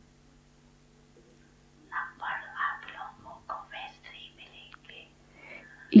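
A faint voice speaking softly in short phrases, starting about two seconds in and trailing off a second before the end, over a steady low hum.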